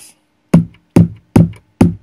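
Vermona Kick Lancet analog kick drum synthesizer playing four kicks in quick succession, a little over two a second. Each kick has a sharp attack and a pitch that drops fast into a short low boom. The 'balls' control, a compression-like punch stage, is switched out.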